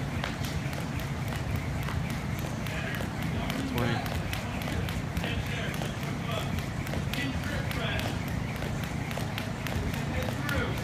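Jump rope slapping a rubber gym floor in a steady rhythm of quick clicks, over the steady low hum of a large drum fan.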